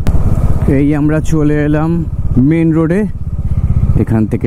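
Bajaj Dominar 400 motorcycle's single-cylinder engine running under way, a steady low pulsing exhaust. Over it, a man's voice holds three drawn-out, wordless tones in the first three seconds.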